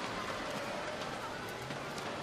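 Steady swimming-pool arena ambience: crowd hubbub mixed with the splashing of swimmers racing.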